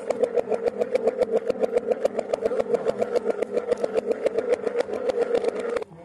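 Damru (dugdugi), the small hourglass pellet drum of a monkey show, rattled fast and evenly at about seven strokes a second, stopping suddenly near the end.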